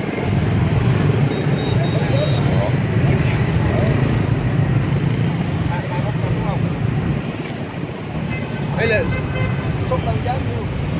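Steady street traffic, mostly motorbikes running past, with snatches of people's voices that grow clearer near the end.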